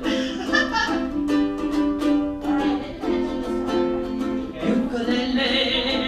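Ukulele being strummed, playing chords in a steady rhythm.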